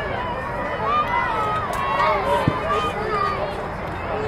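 Several overlapping raised voices of players and spectators calling out across a youth baseball field, with no single clear speaker.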